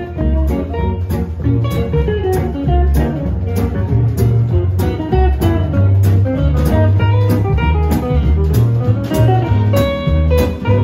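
Small jazz combo playing an instrumental swing passage with no singing. A guitar takes the lead over strummed acoustic guitar, archtop guitar accompaniment, a low bass line and drums keeping a steady beat.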